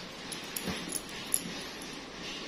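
A dog makes a short sound about a third of the way in. Several sharp clicks follow, the loudest a little past halfway.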